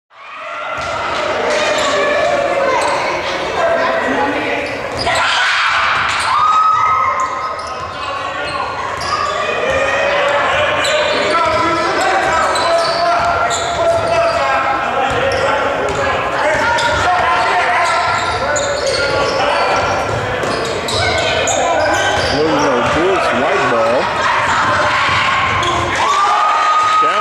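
Basketball game sounds in a large gym: a ball bouncing repeatedly on the hardwood floor amid players' and spectators' voices, with sharp impacts throughout.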